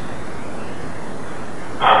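A steady hiss of background noise with no distinct events; a man's voice starts right at the end.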